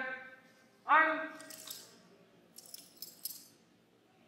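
A drawn-out shouted drill command about a second in, then a short run of sharp clicks and metallic rattles as the color guard's drill rifles are brought up from the order, the hands slapping the rifles and the sling hardware jangling.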